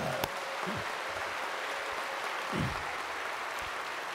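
A large congregation applauding, a steady wash of many hands clapping at once.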